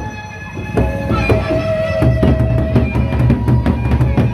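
Sasak gendang beleq ensemble playing: large drums beating under clashing cymbals and ringing gong tones, growing fuller about a second in.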